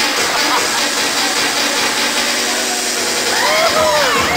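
Loud live electronic dance music in a breakdown: the kick and bass drop out, leaving a steady synth drone under a dense noisy wash. Crowd voices shout over it near the end.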